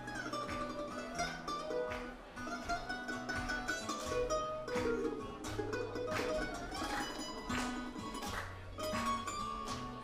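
Acoustic guitar and mandolin playing an instrumental break in a blues tune: steady low bass notes under a picked lead melody whose notes sometimes slide in pitch.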